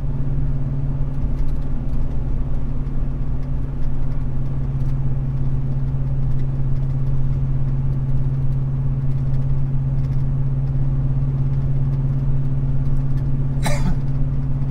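Pickup truck's engine and exhaust heard from inside the cab at highway cruise: a steady low drone with a constant pitch over road noise. The exhaust runs through an aftermarket Roush muffler with an added resonator that the owner says is only partly fixed and still builds up pressure in the cabin.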